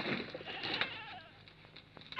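A faint animal call: one short wavering cry that falls in pitch just under a second in, with a few light knocks around it.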